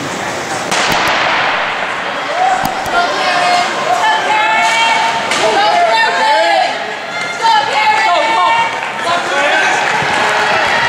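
A starting gun cracks about a second in, then spectators shout and cheer as the hurdlers race, many voices yelling over one another in a large indoor hall.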